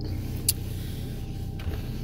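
Opel car's engine running, a steady low rumble heard from inside the cabin, with a single sharp click about half a second in.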